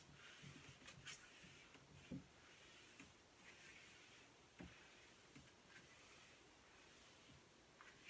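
Near silence, with faint intermittent swishes of crumpled newspaper rubbing across mirror glass and a few soft knocks.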